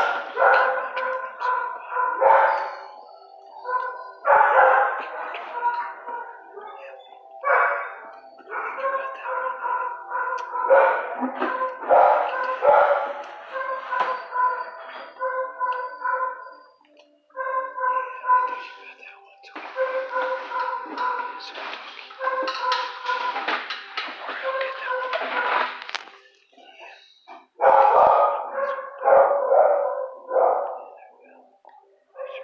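Dogs in shelter kennels barking in repeated bursts with brief pauses, loud throughout.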